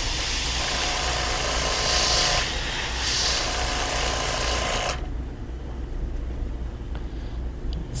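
Gravity-feed airbrush hissing as it sprays paint at low air pressure (five to ten psi), with a couple of stronger bursts as the trigger is pressed harder; the spray cuts off suddenly about five seconds in. A low steady hum runs underneath.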